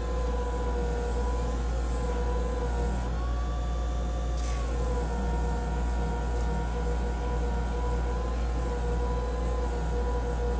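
Electric leather edge burnisher running with a steady whine while the edge of a leather belt loop is pressed against its spinning grooved drum. The pitch wavers slightly, rises about three seconds in, and settles back a second and a half later.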